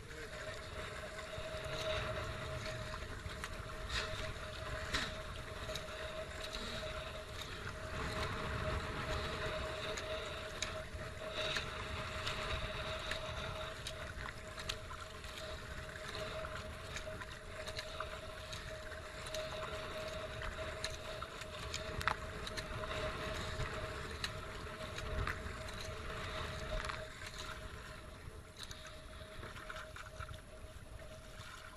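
Kayak being paddled on flowing water: paddle blades dipping and splashing at irregular intervals over water washing along the hull, with wind on the microphone and a faint steady tone underneath.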